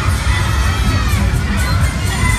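Funfair crowd noise: children shouting with high, excited voices over a constant low rumble.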